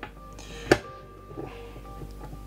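A single sharp knock about two-thirds of a second in as the steel trolley jack is handled on a tabletop, over faint steady background tones.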